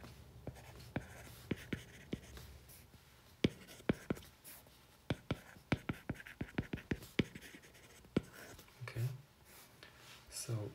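Stylus tip tapping and scratching on a tablet's glass screen during handwriting: a steady stream of irregular sharp clicks as each stroke is written.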